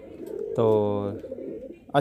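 A man's voice holding one drawn-out syllable, 'to', for about half a second, level in pitch, with quieter pauses before and after.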